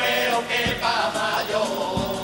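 A carnival murga's male chorus singing together in full voice, with two low drum strokes under the song.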